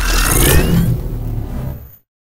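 Intro logo sound effect: a loud rushing, engine-like noise with a rising whine, mixed with music, fading out near the end.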